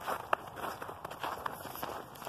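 Footsteps of people walking outdoors, a string of irregular soft steps.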